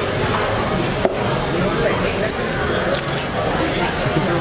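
Restaurant background chatter and general room noise, with a single sharp click about a second in.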